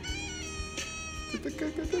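Quiet music: a high melody line that holds its notes and bends them.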